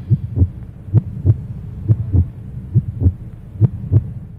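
Heartbeat sound effect: pairs of short, low thumps repeating a little faster than once a second, over a steady low hum.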